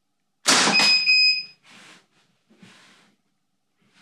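A CO2 pistol fires once, a loud sharp shot about half a second in. About a quarter second later the ballistic chronograph gives a steady high beep lasting just under a second as it registers the shot. A couple of faint short handling noises follow.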